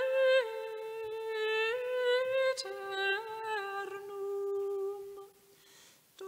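A single voice humming a slow melody of long held notes that move up and down by small steps, breaking off briefly near the end.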